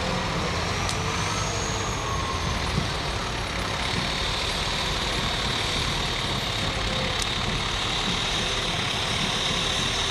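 Fire engine's diesel engine running at a low idle as the pumper creeps slowly past, a steady low rumble. A steady high whine joins about four seconds in.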